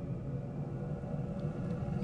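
A steady low background rumble.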